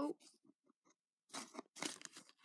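Collapsible plastic pencil cup being handled, giving a few short crunching clicks in the second half as it is pushed and pulled into shape.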